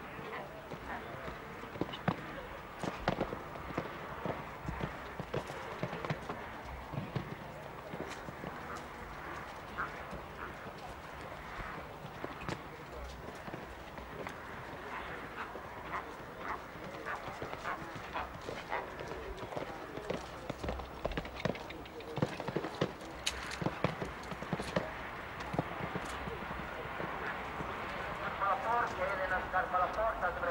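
A show-jumping horse's hooves cantering on a sand arena: a running series of uneven thuds as it takes the jumps. Indistinct voices sit underneath, and a voice grows clearer near the end.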